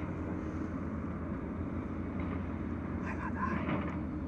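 Steady low engine drone that runs unchanged.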